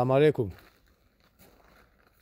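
A man's voice says a short word at the start. It is followed by near quiet with a few faint, short clicks.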